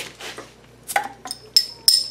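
Hand-forged steel bottle opener prying the crown cap off a glass beer bottle: a run of sharp metallic clicks and clinks, several with a short high ring, the loudest in the second half.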